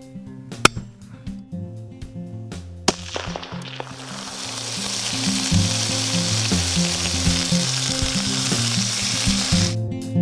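Caribou meat frying in a large pan on a camp stove: a steady sizzle builds from about three seconds in and cuts off just before the end. Two sharp clicks come in the first three seconds.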